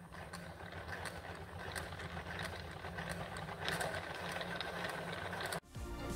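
Hand-cranked plastic yarn ball winder turning, its gears whirring and rattling steadily with small clicks as yarn winds on into a center-pull ball. It stops about five and a half seconds in.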